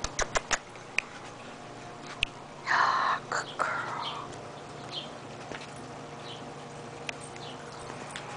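A few sharp clicks, then a harsh, raspy animal call about three seconds in, quickly followed by two shorter calls.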